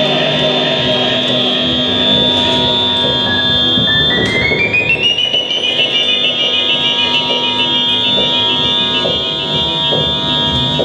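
Live experimental noise music: layered electronic drones and buzzing sustained tones over a noisy churn, with a high tone that climbs in small steps about four seconds in and then holds.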